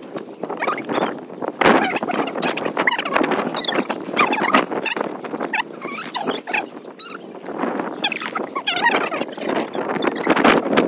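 Wet beach pebbles and stones crunching and clattering irregularly as someone walks over the shingle and handles the stones while looking for crabs.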